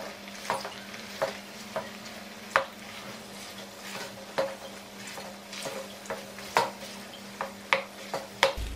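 Wooden spatula pressing and mashing softened bánh tét slices in a nonstick pan of simmering water, with irregular sharp taps of the spatula against the pan over a steady bubbling hiss. A steady low hum runs underneath.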